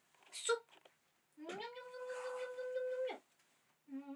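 Black cat giving a long drawn-out meow, about a second and a half long, that rises in pitch and then holds steady before stopping; a second long meow begins right at the end.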